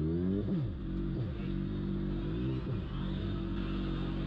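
Sport motorcycle engine heard from the rider's seat: the revs rise, then fall sharply about half a second in. The pitch dips and climbs again just before three seconds in, then holds steady.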